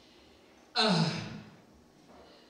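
A woman's voice through a microphone: after a pause, one short breathy vocal sound about a second in, falling in pitch and fading away.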